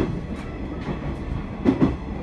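Inside a JR 719 series electric multiple unit rolling through station trackwork: a steady low running rumble broken by wheel clacks over rail joints and points. There is a quick double clack near the end.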